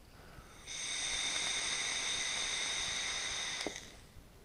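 A pipe-shaped electronic cigarette being drawn on: a steady hiss of air and vapour pulled through the atomizer as the coil fires. It starts under a second in and lasts about three seconds.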